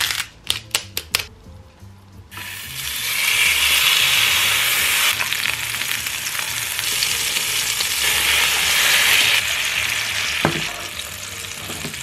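A few sharp clicks, then a raw steak goes into a hot oiled frying pan and sizzles loudly from about two seconds in. The searing continues steadily with butter and garlic in the pan, with one sharp click near the end.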